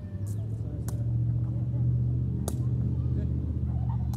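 Sharp cracks of a woven cane ball being kicked, three in the span, over the steady low hum of a motor vehicle engine that grows louder after the first second.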